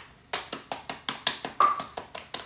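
Dried red kidney beans rattling in a plastic bag as it is shaken: a quick, even run of sharp clicks, about seven a second, starting a moment in.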